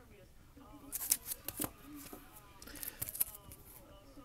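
Hard plastic card holders being handled, with a few sharp clicks and clacks about a second in and again around three seconds as cased cards are picked up and set down, over a faint rustle.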